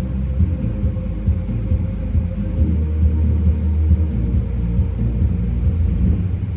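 Bass-heavy light-show music playing from the cabin speakers of a Tesla Model Y. Heard from outside the car with the rear windows closed, it is mostly a low, muffled bass.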